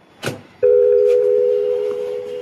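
A short click, then a loud steady electronic tone of two close pitches that starts about half a second in and slowly fades.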